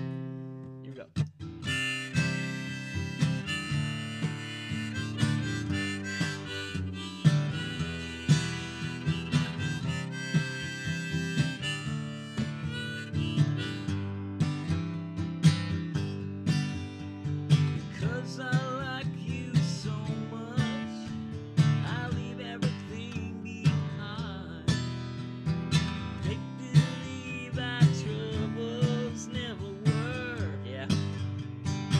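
Acoustic guitar strummed, with a harmonica in a neck rack played over it; from about halfway, the harmonica's notes waver.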